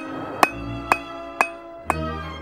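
Hand hammer striking red-hot 3/8-inch round steel stock on an anvil: four blows about half a second apart, each with a ringing anvil tone.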